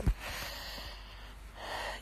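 A woman's long audible breath through the mouth, a soft breathy hiss that swells again near the end.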